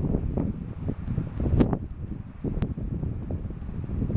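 Wind buffeting the microphone in irregular low gusts, with a few sharp clicks.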